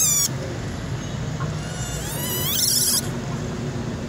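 Infant silvered langur giving thin, high-pitched cries that rise in pitch, one ending just after the start and another about two and a half seconds in: a baby calling desperately for its mother.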